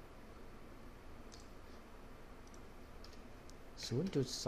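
A few faint, separate clicks of a computer mouse and keyboard over low room noise, as a formula is started in a spreadsheet cell; a man's voice begins right at the end.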